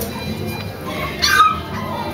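A bulldog puppy gives one short, high yip about a second and a quarter in, over background music.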